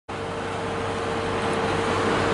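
Steady hum and rush of a car heard from inside its cabin, with a faint steady whine running through it.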